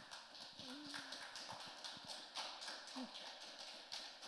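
Audience applauding: a fairly faint, dense patter of many hand claps, with a short voice sound about a second in.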